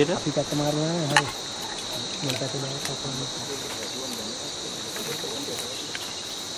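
Steady chorus of crickets, an even high trill that runs without a break, with a person talking over it in the first second and fainter voices later. A sharp click sounds about a second in.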